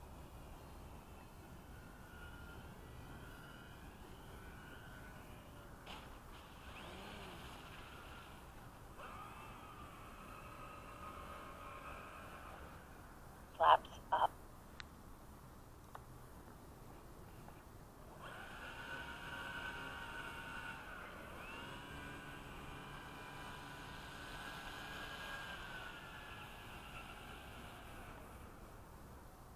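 Faint whine of the Durafly Tundra's electric motor and propeller, its pitch rising and falling with the throttle, growing louder with gliding pitch changes in the second half. About halfway through come two short, loud sounds in quick succession.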